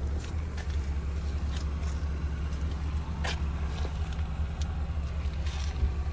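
2016 Honda Civic LX's 2.0-litre four-cylinder engine idling steadily as a low rumble, with a few faint clicks, the clearest about three seconds in.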